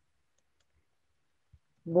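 Near silence, broken by one faint, short click about one and a half seconds in, just before a woman starts speaking at the very end.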